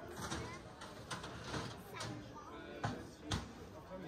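Busy pedestrian-street ambience: many passers-by talking at once, with a few short thumps or knocks, the two loudest close together near the end.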